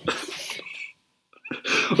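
A man's sudden, breathy burst of air lasting just under a second, with no voiced tone in it, followed by a short pause.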